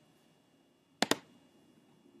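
A computer mouse clicked: two sharp clicks in quick succession about a second in, with near silence around them.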